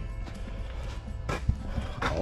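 Background music, with one sharp knock a little over a second in.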